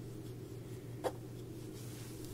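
Faint rubbing of cotton-blend yarn sliding over a 5 mm crochet hook as double crochet stitches are worked, with one short soft click about a second in, over a steady low background hum.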